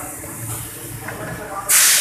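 A short, loud burst of hissing near the end, lasting under half a second, over a steady background hum and indistinct voices.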